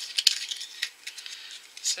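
Hard plastic toy egg capsule and a figurine's plastic wrapper being handled, giving a quick run of light, sharp plastic clicks and rattles.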